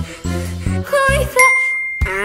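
Cartoonish background music with a regular bass beat stops short about a second and a half in, and a single bright bell-like 'ding' sound effect rings out and fades: the 'idea' cue that goes with a lightbulb popping up.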